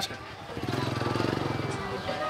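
Small motorbike engine running close by, swelling about half a second in, holding steady, then fading near the end.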